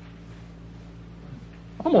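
A pause in a man's lecture, holding only a faint, steady low hum, before his voice comes back in near the end.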